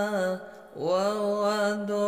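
A reciter's voice chanting Quran verses in the melodic qiro'ah style, drawing out long held notes. One phrase ends about half a second in, and after a brief breath a new long note rises and is held.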